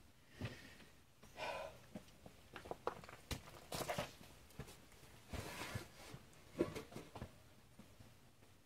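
Faint, scattered small clicks and taps, with a few soft rustles and breaths, from hands handling small carburetor parts and tools.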